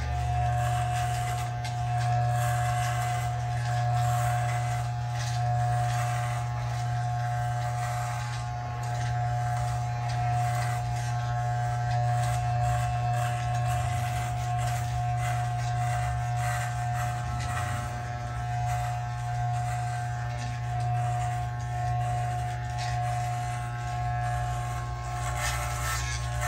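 Andis T-Outliner corded barber trimmer, with its magnetic motor, running continuously as it is passed over and over a shaved scalp: a steady electric buzz whose level wavers slightly.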